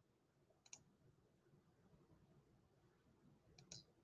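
Near silence: faint room tone broken by two brief sharp clicks, each a quick double, about three seconds apart.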